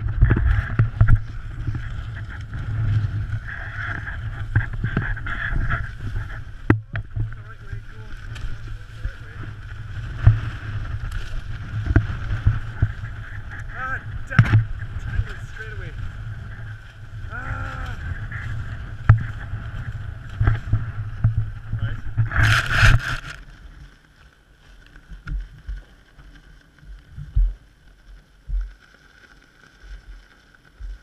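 Wind buffeting an outdoor camera microphone in gusts: a low rumble with irregular thumps, and a louder rushing burst about three-quarters of the way through, after which it drops much quieter.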